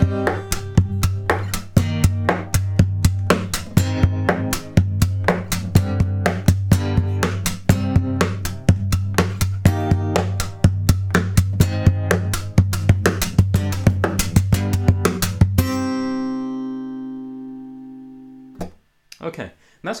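Acoustic guitar played percussively: a steady beat of hand hits on the soundboard and string slaps in bass-drum, snare and hi-hat patterns, with the fingers flicking out to strum chords on the bass-drum hits. About 16 seconds in, the playing stops on a chord that rings out and fades before being damped.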